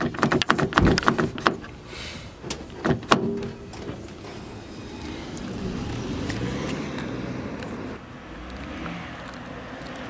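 Clicks and knocks of a car door being opened and handled, with a sharp knock about three seconds in as a door shuts, then the car pulling away with a steady low hum of engine and tyres.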